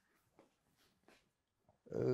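Near silence: room tone in a pause of a talk, with two faint brief sounds, then a man's voice starting just before the end.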